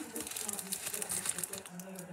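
A plastic wrapper crinkling as it is handled, in quick crackly rustles, with a short laugh at the very start.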